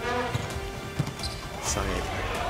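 A volleyball thudding twice: a smaller thump, then a louder sharp hit about a second in as the serve is struck, over arena music.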